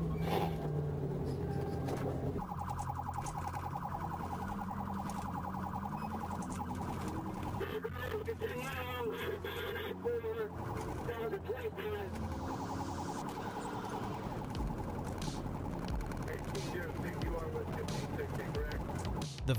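Police patrol car siren sounding a fast, rapidly repeating warble during a pursuit, picked up by the cruiser's dashcam over the car's engine. The quick warble comes in about two and a half seconds in and gives way to a steadier siren tone about two-thirds of the way through, with some voices partway through.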